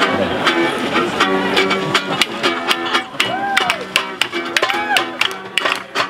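Acoustic guitar strumming a rhythmic chord pattern as the introduction to a sing-along protest song.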